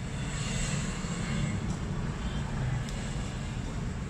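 Steady hum and hiss of background noise, with a couple of faint clicks from handling near the middle.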